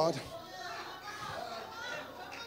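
Faint background chatter of several voices in the congregation, higher-pitched, with children's voices among them.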